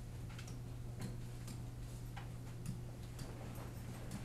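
Scattered light clicks and taps, irregular and a few a second, over a steady low electrical hum.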